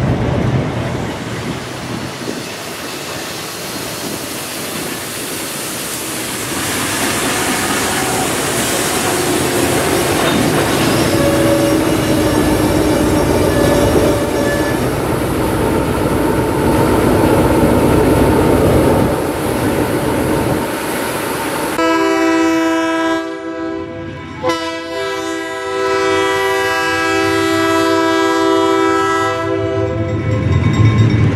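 A freight train of hopper cars rolling past at close range, the wheels and cars making a steady clatter with some faint wheel squeal. About 22 s in, a diesel locomotive's multi-chime horn sounds a short blast and then a long one.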